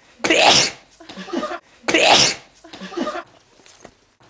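A man sneezing loudly twice, about a second and a half apart, with a brief vocal sound after each sneeze.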